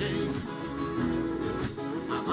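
An ensemble of violas caipiras, the Brazilian ten-string folk guitars, playing live: many plucked strings sounding together.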